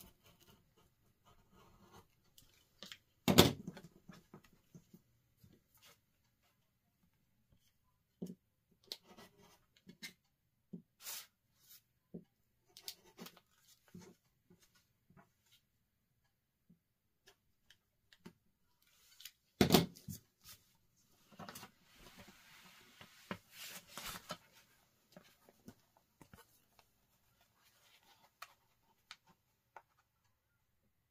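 Rotary cutter cutting through quilt layers along a paper scallop template on a cutting mat, with scattered small clicks and rustling of paper and fabric. Two sharp knocks stand out, one a few seconds in and one about two-thirds of the way through.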